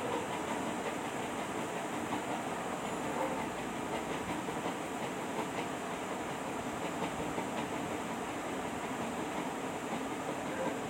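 Steady background noise with faint scattered ticks and clicks. The level stays even, with no rise or fall.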